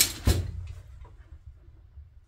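Near quiet: a faint low hum of background room tone, after a short knock right at the start.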